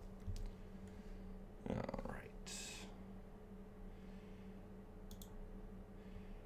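Faint computer mouse and keyboard clicks over a steady low hum, with a pair of sharp clicks about five seconds in. A short murmur of voice comes about two seconds in, followed by a brief breathy hiss.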